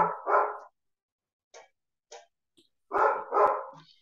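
A dog barking in two pairs of short barks, one pair right at the start and another about three seconds in, coming through a video call's audio.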